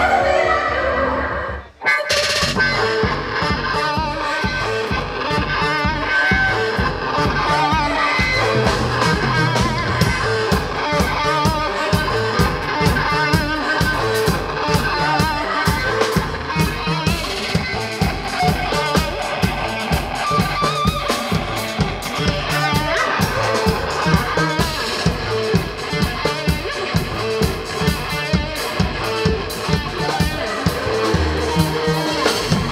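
Live EDM-rock band playing loud, with electric guitar over a fast, steady beat from drums and electronics. The music drops out sharply for a moment about two seconds in, then comes back with the full band.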